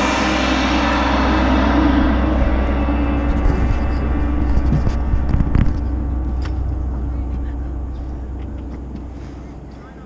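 The final hit of a drum-corps-style ensemble, a held chord with crashing cymbals, rings out and fades away gradually over about ten seconds. The cymbal shimmer dies first, leaving a low steady rumble underneath.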